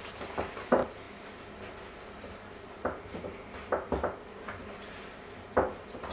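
A wooden spoon stirring stiff cookie dough in a glass mixing bowl, clacking against the glass with a handful of short, scattered knocks.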